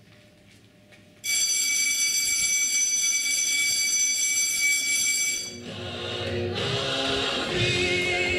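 A loud, steady, high-pitched buzzing tone cuts in suddenly about a second in and holds for about four seconds. It then gives way to music with singing, most likely a sound cue in the stage show.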